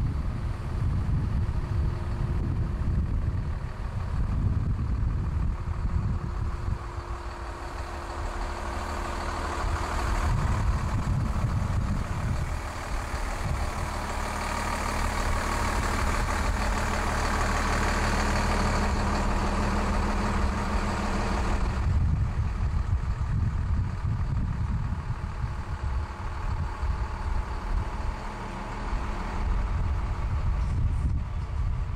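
Alpine Coach diesel motorhome's engine running as it pulls slowly past towing a loaded car trailer, loudest for about ten seconds in the middle, with wind buffeting the microphone.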